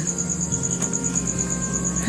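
Crickets chirping in a steady, fast, evenly pulsing trill, over a soft sustained music bed.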